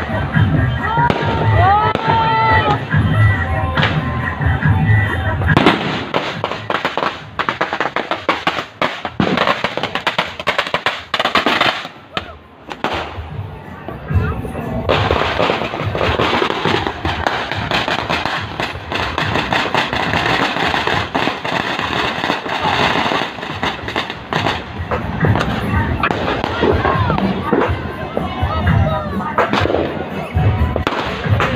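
Fireworks going off in dense, rapid succession: a continuous mix of bangs and crackling that becomes thicker about six seconds in.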